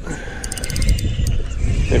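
Spinning reel being cranked in against a hooked fish, with a quick run of rapid clicks about half a second in, over heavy wind rumble on the microphone.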